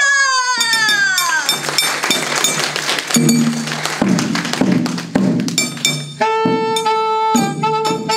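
Chindon-ya street band playing: chindon drum rig and a large drum beating a rhythm. The set opens with a long falling glide, and a steady alto saxophone melody comes in about six seconds in.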